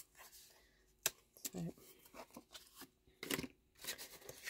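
Faint handling of paper and cardstock on a paper trimmer: a sharp click about a second in, small ticks, and a short rustle of paper near the end.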